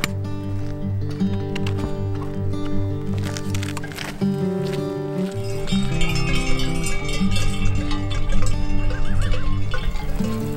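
Background music with sustained, slowly changing chords. A horse whinnies briefly near the end.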